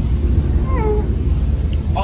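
A single high, falling meow-like cry about two-thirds of a second in, over the steady low rumble of a moving bus heard from inside.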